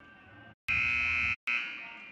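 Gymnasium scoreboard buzzer sounding one loud steady blast of under a second about halfway in. It breaks off briefly, then comes back and dies away in the gym's echo.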